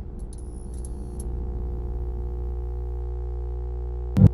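Sustained synthesizer drone of a channel intro sting: a steady held chord with a strong low bass, and a few faint high sparkling ticks in the first second.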